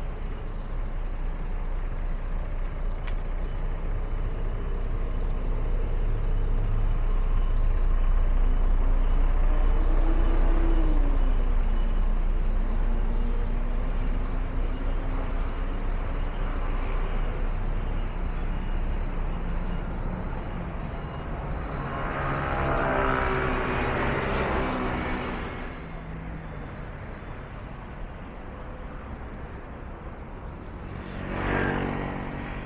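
Traffic on a busy city street: a steady rumble of buses and cars going by, with one engine's pitch rising and then falling about a third of the way in. A louder vehicle passes close about three quarters of the way through, and the traffic is quieter after it.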